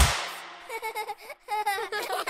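A children's song ends on a sharp final hit whose ring fades over about half a second. Cartoon children's giggling follows, in short bursts, with a brief pause in the middle.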